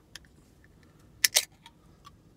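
Aluminium energy drink can's pull tab being pried open by a finger: two sharp metallic clicks close together just past a second in, with a few fainter clicks around them.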